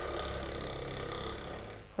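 Laboratory vortex mixer running with a small glass bottle of leaf homogenate held on its cup, a steady low hum that fades out near the end; the mixing of a serial dilution.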